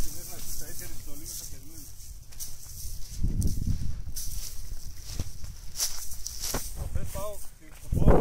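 Footsteps crunching irregularly over a beach of sand, dry seaweed and shell grit, with wind rumbling on the microphone and a few faint voices.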